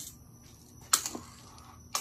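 Two sharp clicks about a second apart, from a tape measure being handled to measure a pine board.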